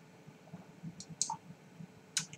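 Faint sounds of a man drinking beer from a glass: two short clicks about a second in, with a brief faint tone just after them.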